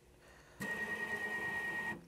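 Axis motor of a desktop CNC mill jogging: a steady high whine with hiss, starting abruptly about half a second in and cutting off near the end.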